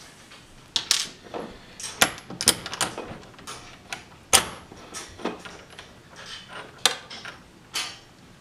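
Metal parts of a small-engine centrifugal clutch clicking and clinking as they are handled and pulled apart by hand: a string of separate sharp clicks and light clanks, the loudest about four seconds in.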